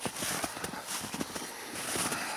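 Footsteps crunching in snow: a quick, irregular run of short crunches.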